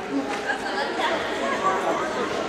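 Chatter of many voices talking over one another in a gymnasium, none standing out.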